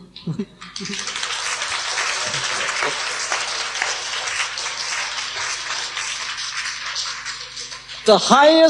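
Audience applauding: steady clapping that starts about a second in and carries on for several seconds, thinning slightly near the end.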